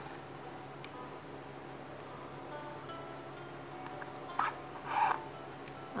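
Soft background music, with two short rustling scrapes about four and a half and five seconds in: a needle and parachute cord being drawn through the punched holes of a sandal sole while stitching the sole and insole together.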